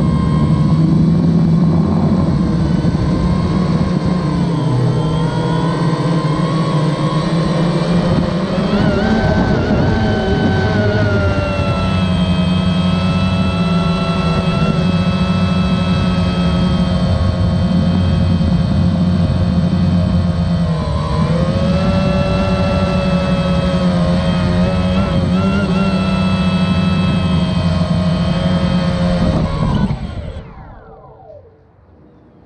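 DJI Phantom 1 quadcopter's electric motors and propellers running, heard from a camera mounted on the drone. The whine rises and falls in pitch as the throttle changes, dipping about two-thirds of the way through as it comes down. The motors wind down at the very end after it lands.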